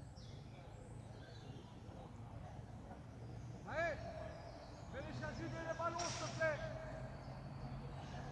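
Faint outdoor background over a steady low rumble, with distant voices calling out briefly about four seconds in and again for a second or two around the fifth and sixth seconds.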